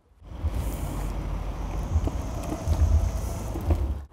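Electric longboard rolling across asphalt: a steady low rumble from its wheels.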